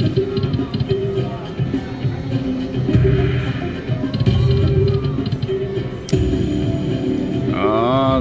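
Grand Fortune: Year of the Rabbit poker machine playing its bonus-feature music and spin sound effects as the hold-and-spin reels respin, with a sharp hit about six seconds in.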